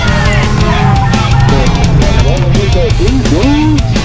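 Loud rock music with a driving drum beat and guitar, with bending lead lines over it.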